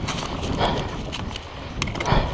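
Mountain bike rolling over a leaf-covered, eroded dirt trail: tyres crunching through dry leaves with scattered clicks and rattles from the bike as it goes over the rough ground, over a steady low rumble.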